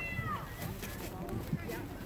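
A short high-pitched shout, rising then falling, at the very start, over the steady murmur of distant voices on an outdoor field.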